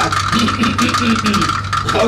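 A hand rattle shaken in fast, continuous rattling, under a man's low voice chanting in held, flat tones, with a steady hum beneath.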